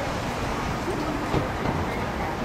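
Steady outdoor background noise, a low rumble with hiss over it, with a few faint distant voices.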